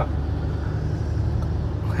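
Car engine and road noise heard from inside the cabin while driving: a steady low hum.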